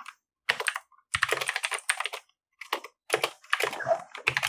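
Typing on a computer keyboard: rapid keystroke clicks in four short bursts with brief pauses between them.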